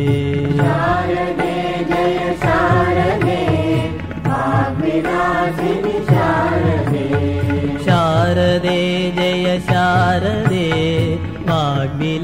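Indian devotional bhajan: a sung, chant-like melody with musical accompaniment that runs on without a break.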